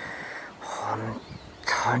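A man draws a breath and makes a short, low voiced sound in a pause, then starts speaking near the end.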